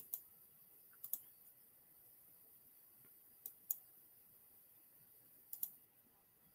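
Sparse faint clicks, mostly in close pairs, every second or two over near-silent room tone.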